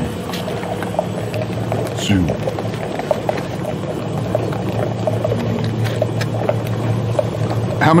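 Emery Thompson 12-quart batch freezer running with a steady low hum while churning a batch, with scattered small clicks and crunches as cookies are dropped in and broken up by the dasher.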